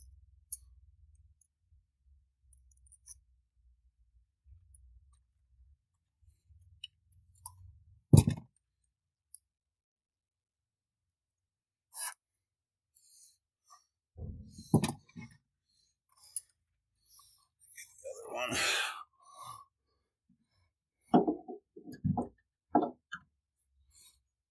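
Scattered clicks and knocks of hand work on a G37 convertible's top flap mechanism. The loudest is a sharp knock about eight seconds in, and a brief rushing noise comes around eighteen seconds.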